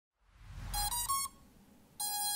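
Electronic beeps of an intro logo sting: three short tones in quick succession, each a little higher than the last, over a low rumble that swells and fades. They stop about a second and a quarter in.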